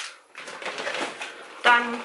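Grocery packaging being handled: rustling with small clicks and knocks as a cardboard box of frozen chicken nuggets is picked up. A woman's voice starts near the end.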